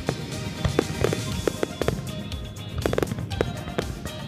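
A barrage of aerial firework shells bursting, about a dozen sharp bangs in four seconds with a short lull in the middle, over music.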